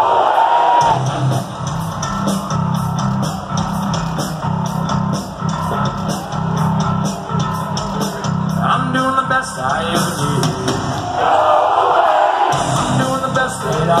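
Live rock band playing a steady groove with a regular beat while a large arena crowd sings the chant line back.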